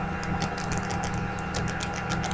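Someone chewing chicken close to the microphone: a run of quick, irregular crackly clicks over a steady low hum.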